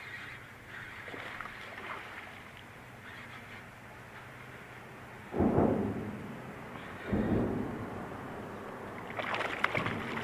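Water noise from a kayak during a bass fight: two loud sloshes of the paddle in the water, about two seconds apart near the middle, then a hooked bass thrashing and splashing at the surface beside the kayak near the end.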